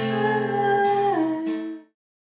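Acoustic guitar chord strummed once and left ringing, with a voice humming a held note along with it that steps down in pitch about a second in. The sound cuts off abruptly near the end.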